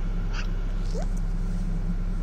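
A black-billed magpie gives two soft, short calls, the second a quick rising squeak, over the steady low hum of the idling car.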